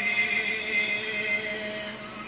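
A male voice chanting the imam's prayer recitation, holding one long note that fades away toward the end, heard from a television broadcast.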